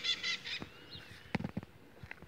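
Birds calling by the water: a fast series of short, sharp, repeated high calls that stops about half a second in, followed by a faint, drawn-out arching whistle. A few soft clicks come about a second and a half in.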